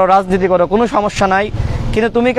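A man speaking Bengali into reporters' microphones, with a low vehicle rumble beneath his voice in the second half.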